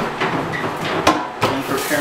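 A few sharp knocks, the loudest about a second in, with a voice talking softly between them.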